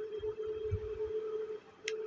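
Quiet room tone with a steady hum and a single short click near the end.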